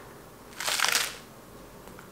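A crisp crunch of someone biting into a chunk of raw iceberg lettuce, one bite about half a second in that lasts about half a second.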